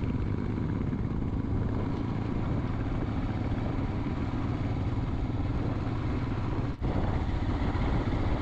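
Royal Enfield Himalayan's single-cylinder engine running steadily at road speed, heard from the rider's seat. The sound cuts out for an instant about seven seconds in.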